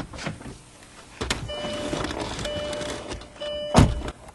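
A man getting into a car: the door clicking open, then shuffling over a steady hiss with a faint tone that sounds three times, and a heavy thump near the end as he drops into the seat.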